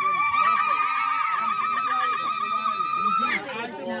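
A woman ululating: one long, high trilled cry held at a steady pitch, breaking off a little after three seconds in, over lower voices of the gathering.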